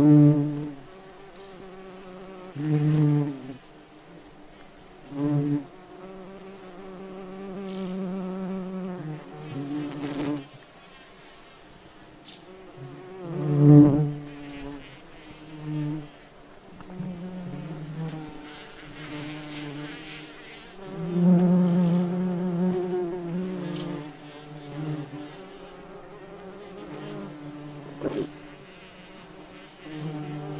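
Cockchafers (May beetles) in flight: the low, droning buzz of their wings, wavering in pitch. It swells loudly several times as a beetle passes close and falls back to a fainter hum in between.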